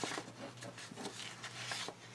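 Faint rustling and light taps of paper being handled, with a small click at the start, over a low steady hum.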